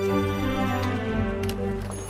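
Slow ambient fantasy background music of held, sustained tones. A few light clicks come through about a second in, part of the track's mixed-in shop ambience.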